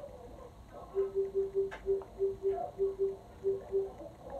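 A run of about a dozen short beeps at one low pitch, about four a second, starting about a second in and lasting about three seconds.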